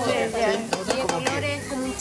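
A slotted spatula stirring and scraping an onion-and-garlic sofrito in a stainless steel pan, with a few sharp clicks against the pan about a second in.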